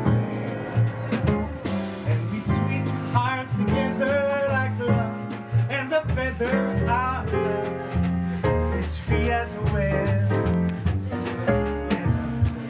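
Live jazz piano trio playing an instrumental passage: piano lines over a plucked double bass, with drums and cymbals keeping time.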